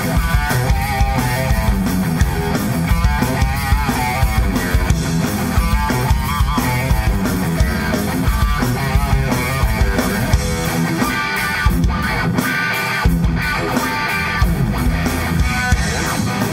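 Rock band playing live: an Ibanez electric guitar lead with wavering bent notes over bass guitar and a Sonor drum kit.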